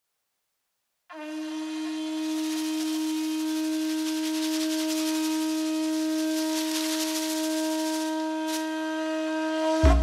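Conch shell blown in one long, steady note that starts about a second in, with audible breath noise. Music with a low drum beat comes in just at the end.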